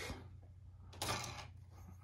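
A thin clear plastic packaging tray rustling briefly about a second in, as a wireless charging pad and its coiled cable are lifted out of it.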